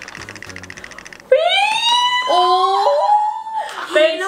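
A quick rattling roll, then about a second in a loud, high-pitched drawn-out 'ooh' that rises and then holds, with a second lower voice joining in, an excited reaction to a blind-bag reveal.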